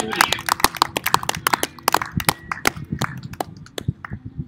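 Scattered applause from a small audience, individual hand claps several a second, thinning out near the end, with a few voices among them.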